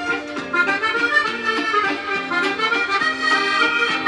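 Accordion music in a stereotypical French style: a tune of held notes over a steady rhythm of short repeated chords.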